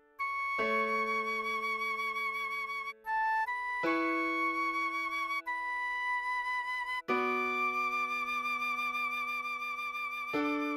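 Recorder playing a slow melody of long held notes with a slight vibrato, a few quick notes around three seconds in, over piano chords struck about every three seconds and left to ring.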